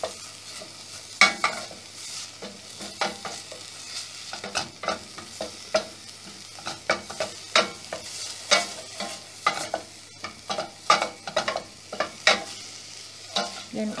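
Wooden spatula stirring and scraping a blended chili-onion paste as it fries in oil in a stainless steel pot, with irregular sharp knocks of the spatula against the pot over a steady light sizzle.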